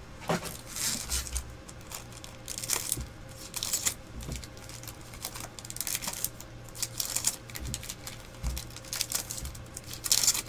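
Foil trading card pack wrappers crinkling and trading cards being handled and shuffled, in irregular rustles with small clicks.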